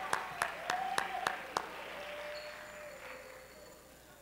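Audience applause with one person's hand claps close to the microphone, about three or four claps a second. The close claps stop about a second and a half in, and the applause then dies away.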